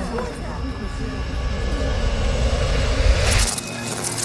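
Cinematic magic sound effect: a low rumbling swell builds for about three seconds, then ends in a brief bright crackling burst as the rumble cuts off suddenly. It accompanies the glow spreading over the hand.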